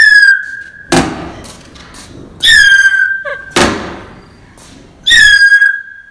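Comedy sound effect, three times over: a shrill whistle that dips in pitch for about a second, followed by a sharp thump.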